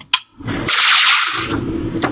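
A slide-transition sound effect: a short, loud swishing whoosh lasting about a second, starting about half a second in and trailing off.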